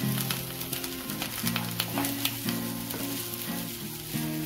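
Grated coconut mixture with curry leaves sizzling in a nonstick pan as a wooden spatula stirs it, with scattered short clicks, over background instrumental music.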